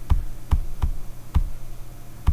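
A quick series of about five sharp clicks on a computer as slides are skipped forward one after another, over a faint steady low hum.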